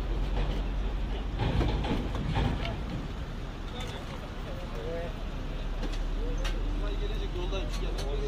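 Indistinct voices of several people talking at once over a steady low rumble of vehicle engines and road traffic, a little louder about two seconds in.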